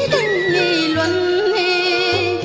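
A woman singing chèo, Vietnamese traditional folk opera, drawing out the vocables of the line in an ornamented melisma. The note glides down just after the start and is then held with a wide vibrato. Instrumental accompaniment with a low beat about twice a second runs underneath.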